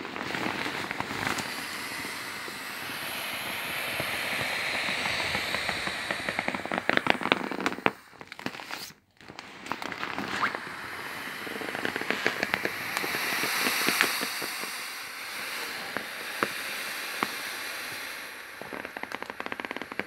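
Air hissing out of an inflatable vinyl air mattress's valve as it is pressed down to deflate, with crackling and crinkling of the vinyl under the hand. The hiss stops briefly a little before halfway, then starts again.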